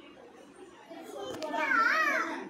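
A young child's high-pitched voice, wavering up and down in pitch, getting loud about a second in, over faint background talk.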